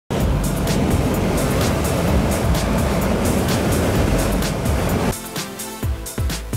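Dalton MA440 dust collector running, its fan drawing air into the round intake with a loud steady rush, mixed with background music with a regular beat. The machine noise cuts off about five seconds in, leaving only the music.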